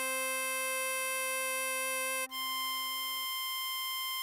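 Computer-rendered harmonica tones playing the melody: a long held hole-4 blow note (C5), then about two seconds in a change to a higher note, the hole-7 blow (C6). A steady lower tone sounds under the melody and drops out shortly before the end.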